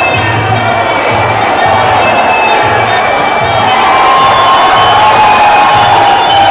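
Traditional Muay Thai fight music (sarama): a wavering, sliding Thai oboe (pi java) melody over a steady drum beat of about two beats a second, with small regular cymbal ticks. A crowd cheers underneath.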